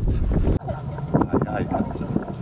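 Wind buffeting the microphone as a low rumble, cut off suddenly about half a second in. Background voices of people chattering follow.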